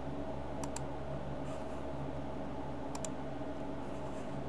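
Two computer mouse clicks, about half a second in and about three seconds in, each a quick press-and-release pair, over a steady low hum.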